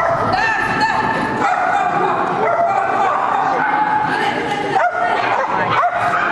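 A small dog barking and yipping over and over as it runs the agility course, the calls coming about twice a second, with a person's voice mixed in.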